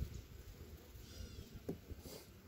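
Wooden hive frame being lowered into a beehive box: a brief faint high-pitched squeak about a second in, then a light click near the end.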